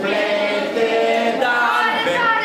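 A group of voices singing a song together in held, melodic notes.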